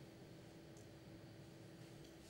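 Near silence: quiet hall room tone with a faint steady hum.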